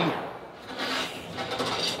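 A rough rubbing, scraping noise lasting about a second and a half.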